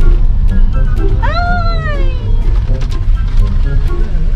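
A cat meows once, a single call that rises and then falls in pitch, lasting about a second, a little over a second in. Background music and the low rumble of the moving car run underneath.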